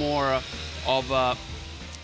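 A man speaking in two short bursts over background music.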